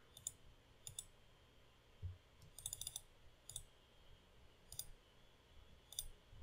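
Faint, scattered clicks of a computer mouse, single clicks with a quick run of several about halfway through, over near-silent room tone.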